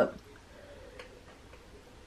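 A sip of coffee from a ceramic mug: mostly quiet, with one faint short click about a second in.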